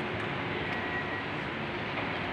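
Steady, even rushing background noise of a crowded church, with no distinct events.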